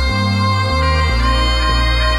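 Background music: a bass line stepping from note to note under sustained higher tones, at a steady level.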